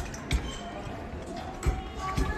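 Two dull wooden knocks, one shortly after the start and one near the end, as wooden string puppets are set down on the stage and the rider lands on the wooden horse, over faint voices and music.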